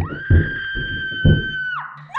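A high-pitched scream held steady for about a second and a half, then falling in pitch as it dies away, over heavy low thuds of a horror music score.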